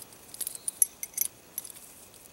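Brass hardware of a highline safety tie, its ring and panic snap, clinking as it is handled and attached to a rope: a few light metallic clicks.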